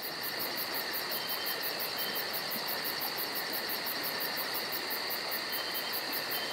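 A steady, high-pitched chirring like insects, with a fast even pulse of about five beats a second over a constant hiss.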